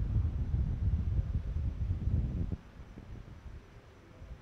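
Wind buffeting the microphone: a gusty low rumble that drops away suddenly about two and a half seconds in, leaving faint low background noise.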